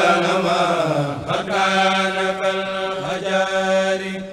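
Arabic religious verse chanted in long, held notes over a steady low tone, with a short break about a second in.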